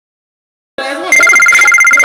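A loud electronic ring, two high tones trilling rapidly like a telephone ringer, starting about a second in, with a voice under it.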